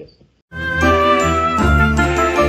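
A musical jingle cuts in abruptly about half a second in, after a brief silence, and plays loudly with a pulsing bass: the show's transition sting.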